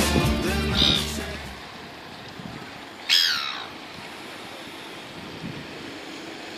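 Background music fading out, then one loud falling squawk from a gull about three seconds in, over steady outdoor background noise.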